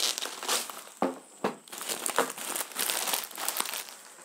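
Clear plastic packaging being handled and pulled off a boxed stand: irregular crinkling and rustling, with a few sharp crackles.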